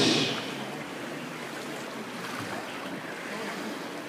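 Steady wash of splashing water as water polo players swim and tussle in the pool.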